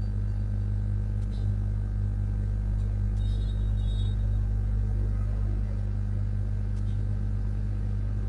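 Steady low hum and rumble on the audio line, unchanging throughout, with faint steady tones above it and no speech.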